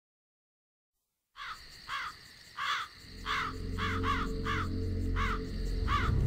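After about a second of silence, a crow caws about nine times, roughly two calls a second, while a low drone swells in underneath from about halfway through.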